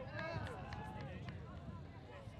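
Field sound at an ultimate frisbee game: players' voices calling out, strongest in the first half-second, with scattered short clicks over a low background rumble.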